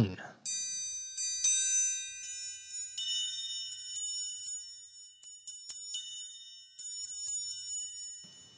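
Sampled orchestral triangle (EastWest Symphonic Orchestra Triangle 1) struck a dozen or more times in an uneven pattern: a light, high, dainty ding whose long ringing tails overlap. The patch has a muted stroke, but it does not cut off notes that are already ringing.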